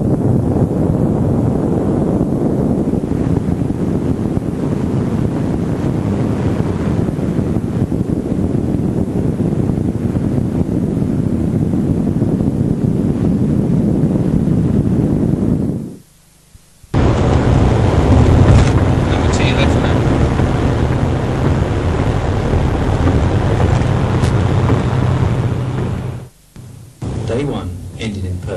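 Steady wind and road noise of a car driving at speed, picked up by a camcorder microphone. It drops out abruptly about sixteen seconds in, and after a second it resumes with a steadier low hum.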